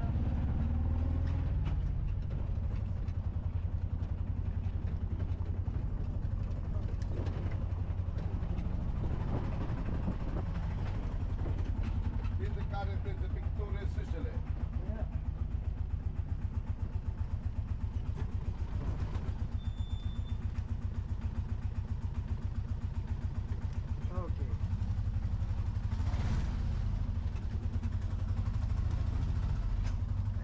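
Small engine of a motorised three-wheeled tuk tuk running steadily under way, a low, rapidly pulsing putter heard from the passenger seat of the open cab.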